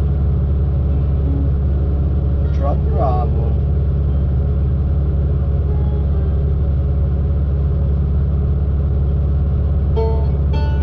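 Log loader's diesel engine idling steadily, heard from inside the cab, with a brief higher gliding sound about three seconds in.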